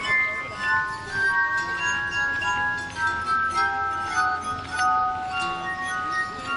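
Glass harp: wet fingertips rubbing the rims of water-tuned wine glasses, playing a slow melody of sustained, pure ringing notes, often two or three sounding together.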